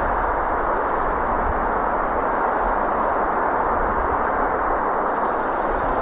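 Steady outdoor rushing noise with a low rumble, even in level throughout, with no distinct events.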